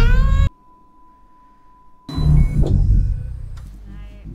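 Film soundtrack sound design: a loud low rumble under a rising pitched tone, cut off abruptly about half a second in. A faint steady high tone follows, then another loud low hit about two seconds in that slowly fades.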